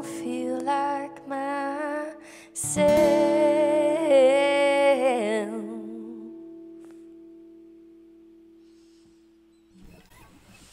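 A woman sings the closing line of a song to her acoustic guitar, ending on a long note with vibrato. A final strummed chord about three seconds in rings on after her voice stops and slowly fades away over several seconds.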